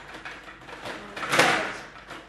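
Play on a Stiga Play Off table hockey game: quick clicking and clattering of the rods, plastic player figures and puck, with a louder burst about one and a half seconds in.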